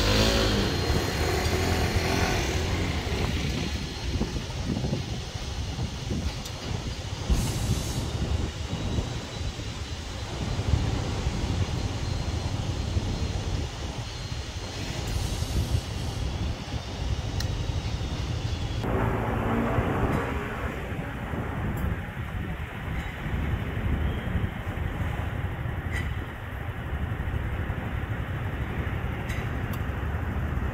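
Road traffic: a steady low rumble of passing cars and scooters, with vehicles going by louder near the start and again about twenty seconds in.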